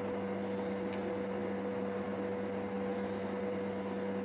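Steady electrical hum, a few low constant tones over a faint hiss, unchanging throughout: room tone.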